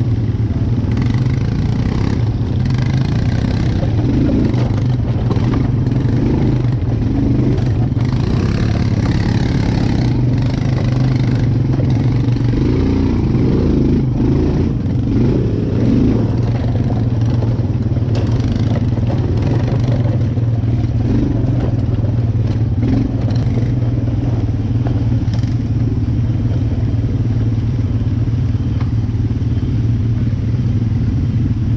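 ATV engine running at a steady pace heard from the machine itself as it is ridden over a rough, muddy dirt trail, with knocks and rattles from the bumps.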